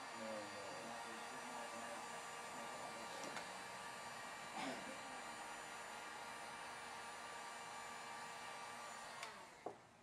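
Electric heat gun running steadily, blowing hot air to dry the ink on a freshly screen-printed T-shirt; it is switched off about nine seconds in.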